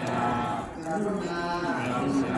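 A voice intoning a Thai Buddhist Dhamma verse in a slow chant, each syllable drawn out into a long held note that steps up and down in pitch.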